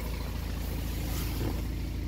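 BMW X3 20d's 2.0-litre four-cylinder turbo diesel idling steadily, heard from inside the cabin.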